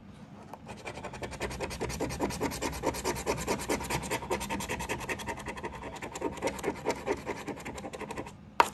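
Green plastic scratcher scraping the latex coating off a paper scratch-off lottery ticket in rapid back-and-forth strokes, several a second, starting about half a second in.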